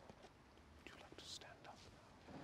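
Near silence: faint room tone with a few soft clicks and a faint breathy, whisper-like sound about a second in.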